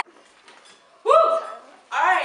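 A person's voice: after a near-quiet first second, one short high-pitched vocal sound about a second in, with another starting near the end.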